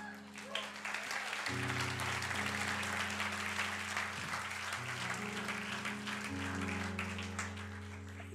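A congregation applauding, starting about a second and a half in, over soft held keyboard-like chords that change a few times.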